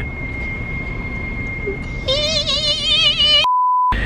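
A car's air conditioning squeaks with a steady thin high whine over cabin road noise. About two seconds in, a held sung note with vibrato comes in, and it is cut off by a short steady electronic bleep.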